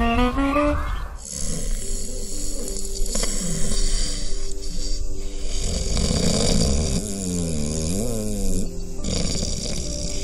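A short rising musical sting in the first second, then a man snoring, rough breaths with a wavering tone near the end, over a faint steady background.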